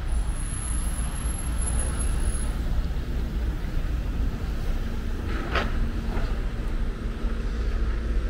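A motor vehicle's engine running with a steady low rumble, with a short hiss about five and a half seconds in.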